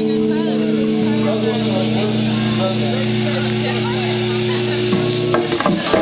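Amplified electric guitar holding a sustained chord that rings on through the amp. A lower note joins about a second in, and the chord breaks off around five seconds in, with people talking over it.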